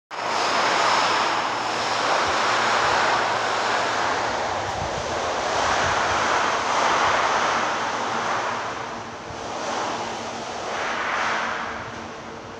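Loud rushing noise that swells and fades every second or two, over a faint steady low hum.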